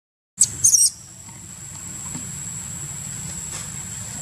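A short, very high-pitched squeal from a baby monkey about half a second in, over a steady high insect drone.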